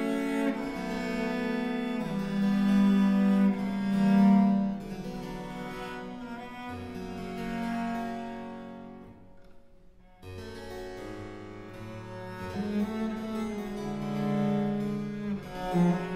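A Baroque cello (no bass bar, gut strings) and a harpsichord playing a slow Adagio together. The cello draws long sustained notes over the harpsichord's chords. The music thins to a brief near-pause about nine seconds in, then the next phrase begins.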